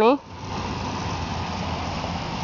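Water jets from a lawn sprinkler toy spraying with a steady hiss.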